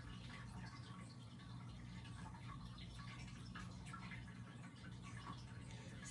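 Quiet room with a steady low hum and faint, scattered soft taps: a small paintbrush dabbing sparkly fabric paint onto a piece of fabric.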